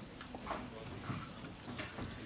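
Faint, scattered clicks and knocks of handling noise as a handheld microphone is passed from one person to another, over quiet room tone.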